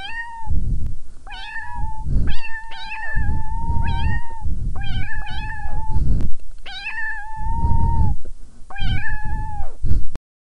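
A cat meowing over and over: high, drawn-out meows about once a second, some running into each other, with a low rumbling noise underneath.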